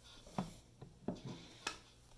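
A few faint, sharp clicks and taps, about five in two seconds, from hands handling small electronic gear on a bench.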